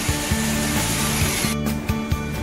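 Background music with sustained bass notes, overlaid by a hiss that cuts off abruptly about one and a half seconds in.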